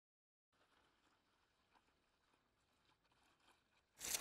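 Near silence: the sound is muted, with only a very faint hiss from about half a second in.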